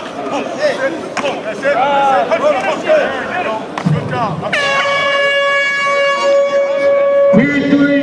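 An air horn sounds about halfway through, starting abruptly and holding one steady tone for about three seconds; near the end a second, lower horn tone joins in.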